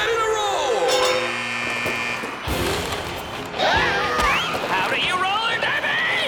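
Cartoon soundtrack of music and excited voices, with held musical tones in the middle and a short thud about two and a half seconds in.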